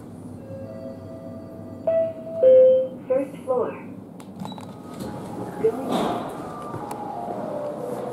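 Elevator arrival chime, two tones stepping down from high to low, followed by a short recorded voice announcement from the elevator.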